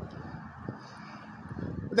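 Steady outdoor background noise, much quieter than the surrounding speech: a low rumble with some faint hiss and no distinct events.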